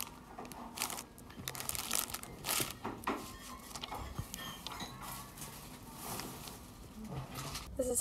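A plastic bag and card stamp folders being handled, crinkling and rustling on and off.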